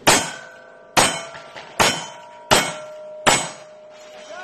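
Five shots from a single-action revolver in cowboy action shooting, fired about one every 0.8 seconds. Each shot is followed by the ringing of a steel target being hit.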